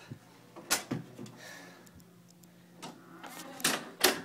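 A few sharp clicks and knocks, two close together about three-quarters of a second in and more near the end, over a low steady hum.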